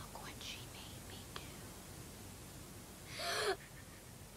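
A faint whispering voice, then a loud, sharp breathy burst about three seconds in that cuts off suddenly.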